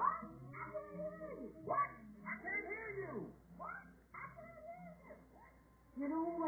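Wordless cartoon-character vocal sounds, whining and sliding squeals that rise and fall, coming from a TV speaker and sounding muffled and narrow. They fade towards the end.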